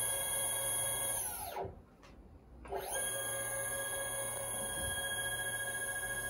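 Electric skateboard hub motors spinning freely under remote throttle, a quiet, steady electric whine of several tones. About a second and a half in it winds down to a stop, then spins back up about a second later and holds steady.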